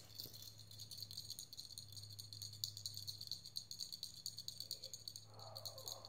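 Faint, rapid rattling of small hard objects, with a steady low hum underneath.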